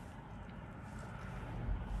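Low, steady rumble inside an electric car's cabin while it sits at an intersection, with a couple of faint taps of a finger on the touchscreen.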